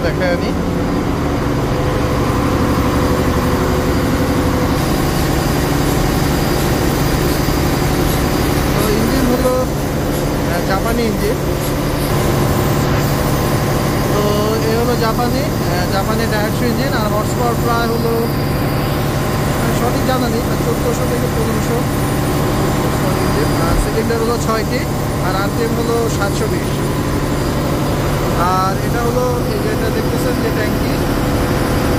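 Large inline multi-cylinder marine diesel engine of a river passenger launch running steadily under way, a loud constant drone with a low hum that grows stronger a few seconds in.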